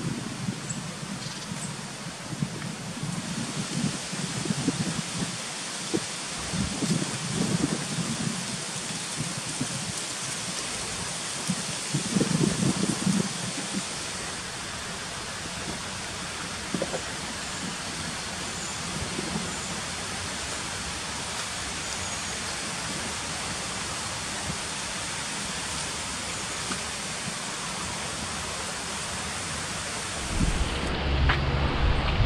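A Eurasian red squirrel rustling through dry fallen leaves in several irregular bursts over the first half, over a steady, even hiss.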